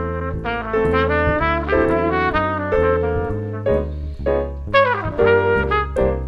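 Jazz trumpet improvising a solo line of quick notes, with a short break about two-thirds through, over a walking bass line.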